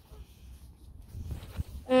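Faint wind and outdoor rumble. Near the end comes a single drawn-out spoken "and" on one steady pitch.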